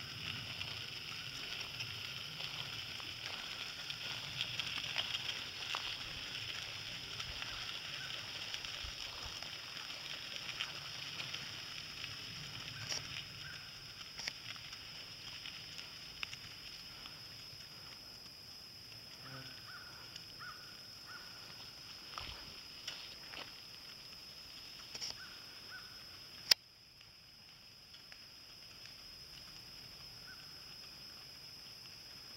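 A pony's hooves and a two-wheeled cart's wheels crunching along a gravel road, growing fainter as the cart moves away, over a steady high hiss. A single sharp click near the end, after which it is quieter.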